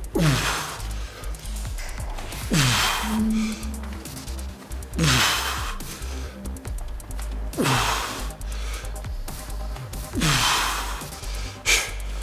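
Background electronic music: a steady low bass with a hissing swell and a quickly falling bass note repeating about every two and a half seconds.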